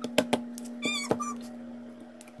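Slime being pressed and squished by hand: a few sharp wet clicks and pops, with a short wavering high squeak about a second in. A steady low hum runs underneath.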